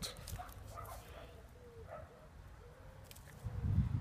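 A dog whining faintly in a few short, pitched calls, with a low rumble building near the end.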